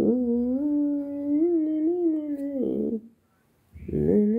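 A person's voice humming one long, held note with small bends in pitch. It breaks off about three seconds in, then starts again after a short pause.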